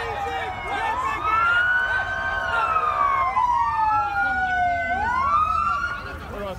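Two police sirens wailing and overlapping, each sweeping slowly up and down in pitch over a couple of seconds.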